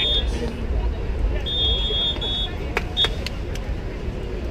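Outdoor ambience at a beach volleyball court: a steady low rumble with faint distant voices, several short high-pitched beeps, and a couple of sharp clicks near the end.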